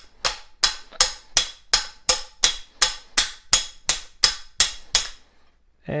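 Claw hammer striking a steel swaging tool set into the heat-softened end of a copper pipe: about fourteen ringing metallic blows at a steady pace of roughly three a second, stopping about a second before the end. The blows drive the tool into the pipe end, stretching it out into a socket.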